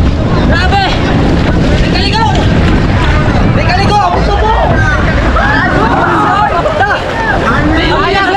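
Wind buffeting the microphone and water rushing along the hull of an outrigger canoe under way at sea, with voices shouting over it several times.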